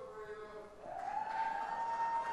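A person's voice calling out from the audience: one long call that rises about a second in and is held, over fainter voices.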